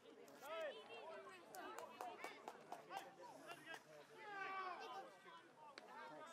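Faint, distant shouts and calls of Gaelic football players across the pitch, with a few sharp clicks in between.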